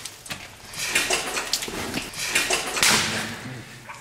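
A caver squirming through a tight passage of wet clay: irregular scraping and squelching of mud-covered overalls against rock, with strained breathing. The loudest sound is a short hissing rush about three seconds in.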